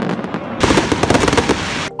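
Aerial fireworks display: the deep rumble of a shell burst, then from about half a second in a dense run of rapid crackling that cuts off suddenly near the end.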